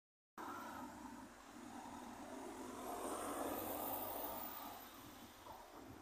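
A car passing on the road, its sound swelling to a peak about three to four seconds in and then fading away.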